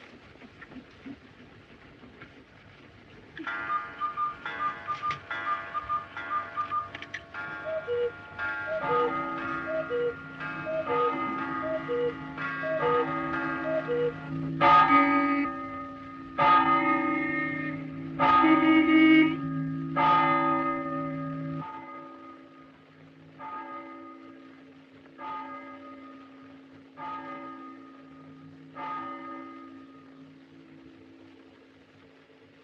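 Church tower bells ringing: a run of quick repeated chime notes, then heavy bell strokes about every two seconds, each ringing on. About halfway through, the low hum under them drops away and the strokes carry on fainter.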